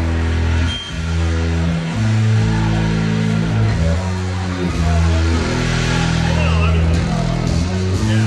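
Live band playing amplified through the PA, led by a deep bass line of held notes that step to a new pitch every half second to a second.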